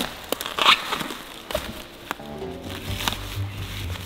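Plastic wrap crinkling and tearing as it is pulled off a new tire, in a few sharp crackles over the first half. Background music comes in about halfway through.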